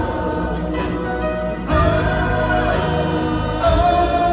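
Live band music with singing, heard from high up in a stadium's stands, a full choral sound of voices over the instruments.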